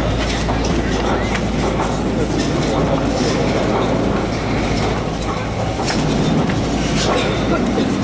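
Detachable high-speed quad chairlift terminal running: a steady machinery hum with clattering and sharp clicks as chairs roll slowly through the station.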